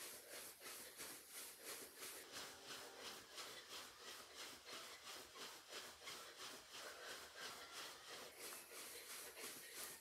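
Faint, even footfalls of sneakers jogging in place on carpet, about three to four steps a second.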